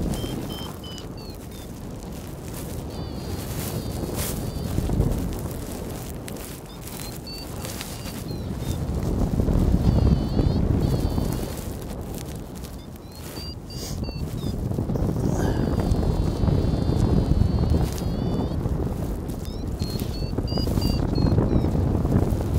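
Wind buffeting the microphone in flight under a paraglider, swelling and easing. Over it, runs of high beeps that rise and fall in pitch every few seconds, typical of a paragliding variometer signalling lift.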